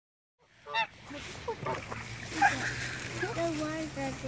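Domestic geese honking: one loud honk just under a second in, followed by more scattered calls.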